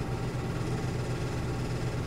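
Steady low hum with an even hiss behind it: room or recording background noise during a pause in speech.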